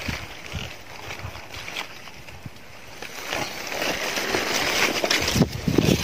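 Rustling of dry grass and leaves with wind on the microphone, getting louder over the last few seconds, with a few light knocks.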